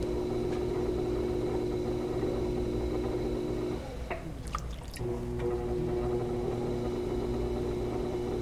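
Steady, even hum of an electric pottery wheel spinning while wet hands shape the clay. The hum drops out for about a second midway, and a few drips and splashes of water sound in the gap before it comes back.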